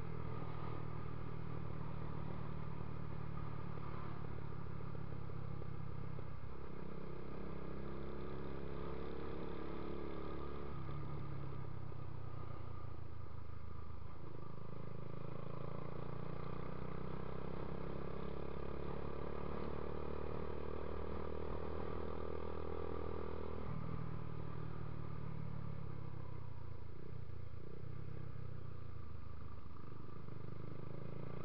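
Dafra Next 250 motorcycle's single-cylinder engine running steadily at road speed, heard from the rider's seat. Its note steps to a new pitch a few times.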